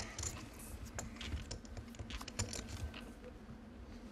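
Poker chips clicking against each other in quick, irregular taps, as players handle and riffle their chip stacks at the table.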